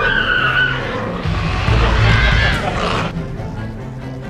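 A woman's startled screams: a high cry right at the start and another about two seconds in, over background music.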